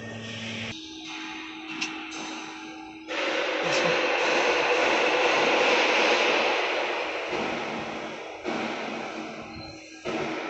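Fiber laser cutting machine working 10 mm carbon steel: a steady machine hum, then about three seconds in a loud, even rushing hiss from the cutting head starts suddenly. The hiss swells, slowly fades, breaks off briefly, and stops just before the end.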